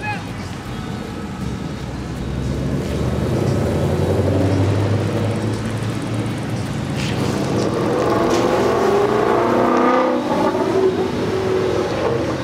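Ford Mustangs driving past on a wet street: a low engine rumble, then engine notes rising several times between about seven and eleven seconds in as a car accelerates away.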